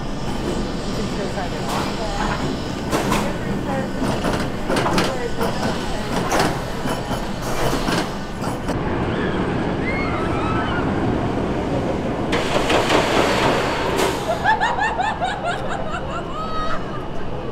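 Premier Rides launched roller coaster train rolling slowly along the station track, with repeated clanks and knocks from its wheels and track for the first half. A loud hiss comes about twelve seconds in, and people's voices are heard near the end.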